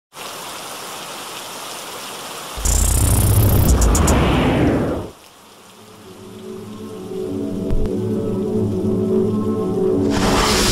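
Sound design for an animated logo intro. A steady rain-like hiss plays for the first couple of seconds. About two and a half seconds in comes a loud deep boom with a falling whoosh, which dies away around five seconds, and then a sustained musical drone swells up toward the end.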